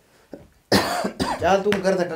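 A man coughs, a sudden harsh burst about three-quarters of a second in, followed by voice.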